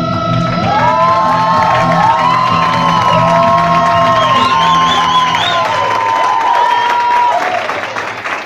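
Music playing with an audience cheering over it; many high whoops rise and fall from about half a second in, and the sound fades near the end.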